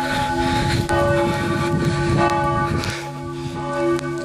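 The two middle church bells of Strängnäs Cathedral, tuned to D and F, ringing helgmålsringning, the Saturday-evening ringing that marks the start of Sunday. They strike in turn about once a second, each stroke ringing on and overlapping the next. A low rumble runs through the middle seconds.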